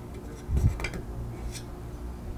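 Brief handling noise of small metal tool work on a steel panel: a low thud about half a second in, then a few sharp clicks as the hex key and freshly unscrewed knob are handled at the spool. A faint steady hum sits under it.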